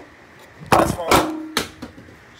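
A few sharp knocks and bumps from things being handled and moved about, the loudest a little under a second in.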